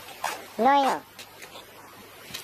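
A person's short wordless voice sound, about half a second long, with the pitch rising and then falling.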